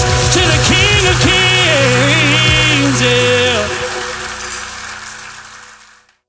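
Live contemporary worship band with vocalists finishing a song: singing over a steady drum beat that stops about a second in, then the voices end and a held final chord fades away to silence near the end.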